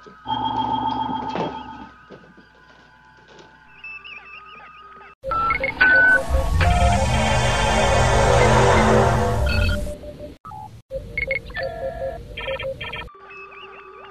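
Star Trek original-series transporter sound effect, about five seconds long from about five seconds in: a high shimmering chime over a deep hum. Electronic bridge beeps and chirps sound before and after it.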